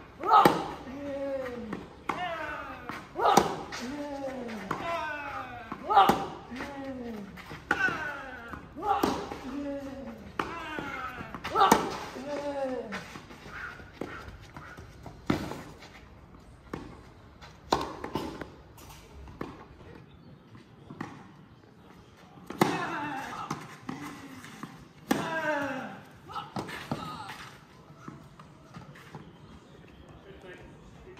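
Tennis rally on a clay court: racket strikes on the ball every second or so, many followed by a player's short grunt falling in pitch. After a quieter stretch of several seconds, a few more strikes and grunts come near the end.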